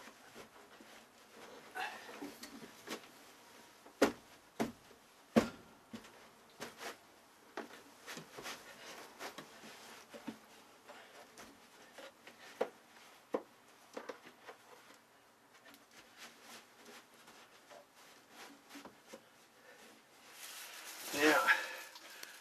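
Hands pressing and smoothing a carpet runner into glue on a boat's cabin floor: soft rustling and rubbing with scattered sharp knocks, the two loudest about four and five seconds in.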